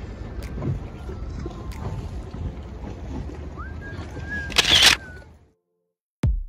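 Wind buffeting the microphone and choppy water around a gondola on open water, a steady rushing noise with a loud gust-like burst about four and a half seconds in. The sound then cuts off to silence about half a second later.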